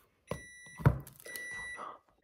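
Two long electronic beeps, one steady high tone each, with a single sharp thump just before the end of the first beep as the cake on its board is set down on the counter.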